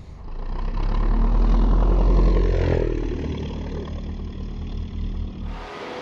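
Single-engine Cessna 172 propeller plane passing low overhead at full power during a banner pickup. Its engine and propeller noise swell to a peak about two seconds in, drop in pitch as it goes by, then fade.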